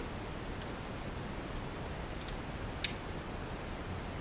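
A person chewing a bite of fried apple pie with the mouth closed: a few faint crunchy clicks, the clearest a little before three seconds in, over a steady low room hiss.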